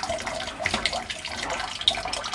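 Water running and splashing steadily into an aquaponics fish tank, an irregular trickling patter.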